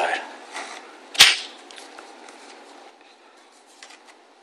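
A single sharp plastic snap about a second in, as the Kydex cheek rest is pressed onto the rubber-overmolded rifle stock, followed by a few faint handling clicks.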